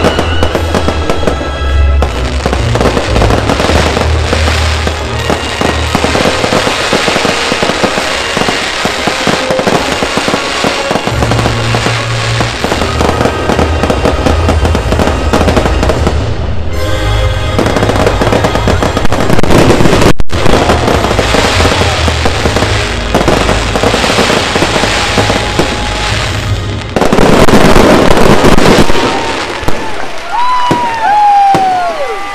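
Aerial fireworks bursting and crackling in quick, dense succession, over music with a steady bass line. The loudest stretch comes near the end.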